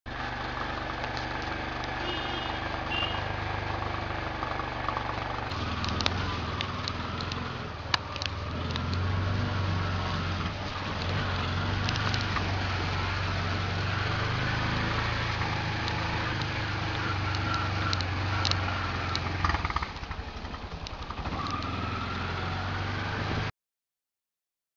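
An engine running steadily, with its pitch shifting a few times and a few sharp clicks over it; the sound cuts off suddenly near the end.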